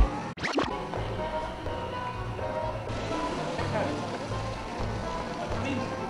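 Club dance music in a breakdown: the steady kick drum stops at the start, leaving held synth tones over a pulsing bass line, with a vocal sample over it.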